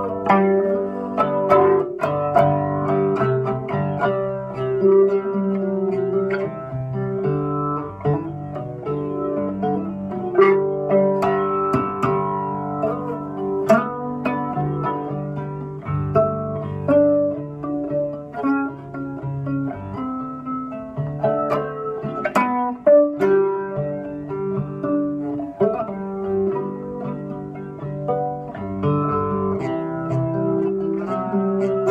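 Homemade three-string cigar box guitar with nylon strings, plugged in through a piezo pickup, played as a picked melody of single notes that change every half second or so.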